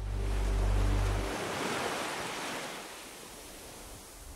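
Sea surf: a wave washing in, swelling to a peak about a second in and then slowly receding, with a low steady hum underneath for the first second or so.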